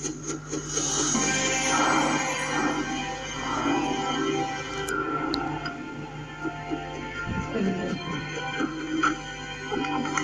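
Cartoon soundtrack music playing from a television's speaker, picked up off the set, with a steady low hum underneath.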